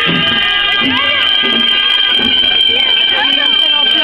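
Moroccan ghaita (reed shawm) holding one long, shrill, steady note, with a crowd's voices calling underneath.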